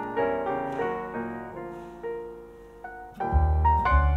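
Jazz piano playing a melody of single notes and chords that ring and fade away, growing softer for a while. A little over three seconds in, a deep bass line enters and the music turns louder.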